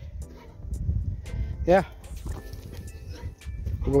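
Footsteps rustling and crunching through dry fallen leaves on a woodland trail, with scattered small clicks and a low uneven rumble on the microphone.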